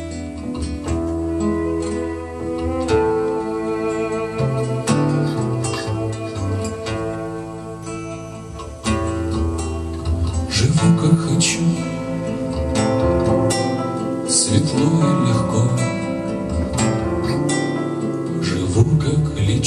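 Instrumental passage by a live acoustic ensemble: acoustic guitars, cello and double bass, with drums. It becomes louder and fuller from about nine seconds in.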